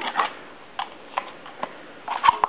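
A few light, irregular clicks and taps, about five in two seconds, from hands and a tool working at a vacuum-operated supercharger bypass valve while trying to poke a hole in it.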